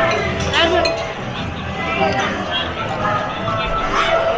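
Busy restaurant dining-room noise: voices chattering in the background with cutlery and crockery clinking now and then.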